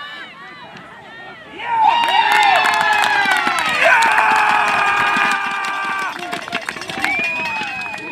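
Sideline teammates and supporters cheering: talk for the first second or so, then from about two seconds in several voices break into long held shouts with clapping, easing after about six seconds, and one high held yell near the end.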